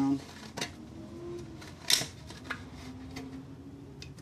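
Empty aluminum soda can being turned against a Sharpie tip and set down on a plywood bench: a few light knocks and clicks, the sharpest about two seconds in.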